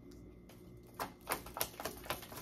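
Tarot cards being shuffled in the hands: after about a second of quiet, a quick run of sharp crackling snaps as the cards slip and flick against each other.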